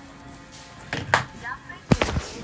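Faint music and voices, as from a small phone speaker, then several sharp knocks, the last and loudest near the end.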